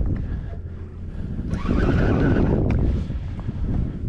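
Wind buffeting the microphone: a dense low rumble that dips about a second in and then comes back fuller for a second or so.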